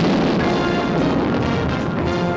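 A sudden loud explosion blast, its noisy rumble carrying on and slowly easing, with music sounding underneath and coming up near the end.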